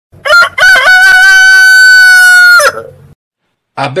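A rooster crowing: a couple of short notes, then one long held note that cuts off suddenly.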